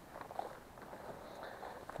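Faint footsteps and rustling of a person walking through tall forest grass.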